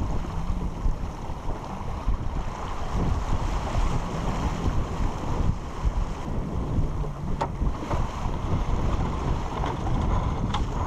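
Wind buffeting the microphone and water rushing and splashing along the hull of a heeled sailboat under sail, in uneven gusts.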